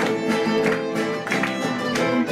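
Argentine folk music played live: a violin carries the melody over two strummed acoustic guitars, with no singing.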